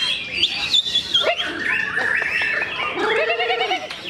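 White-rumped shama (murai batu) singing a varied, continuous run of quick whistles, chirps and sweeping notes, with a fast trill a little past three seconds. Near the end there is a drawn-out, wavering lower sound.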